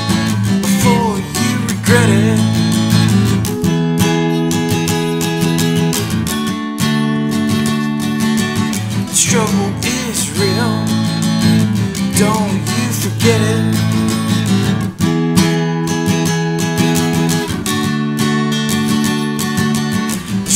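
Acoustic guitar strummed in a steady rhythm, the chords changing every couple of seconds: an instrumental stretch of a solo acoustic song.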